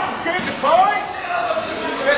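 Voices in a large hall, with a sudden thud about half a second in.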